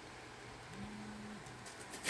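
Quiet room tone, with a faint low hum lasting under a second near the middle.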